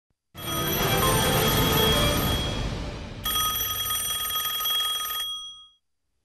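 TV news segment jingle built around a telephone ring: a busy musical swell, then about three seconds in a steady, fluttering ringing tone that stops abruptly near the end.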